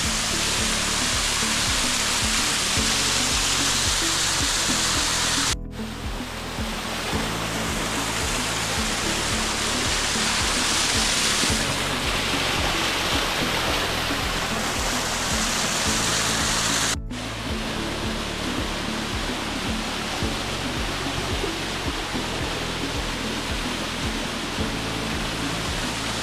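Small forest waterfall pouring onto rocks: a steady rush of falling water, with background music underneath. The sound cuts out for an instant twice, a few seconds in and again past the middle.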